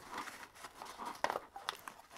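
Soft rustling and crinkling of a nylon Maxpedition pouch being handled, with a few faint clicks.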